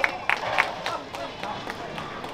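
A few sharp hand claps, about three a second and fading away, over background chatter.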